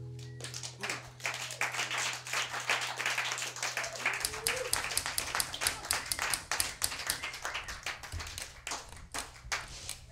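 The last acoustic guitar chord dies away, then a small audience claps for several seconds, the clapping thinning out near the end.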